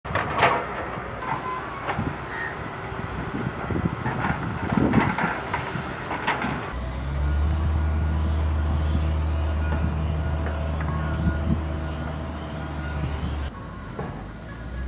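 Outdoor sound at a construction site: scattered knocks and clatter at first, then from about halfway a steady low engine drone from heavy machinery that cuts off abruptly near the end.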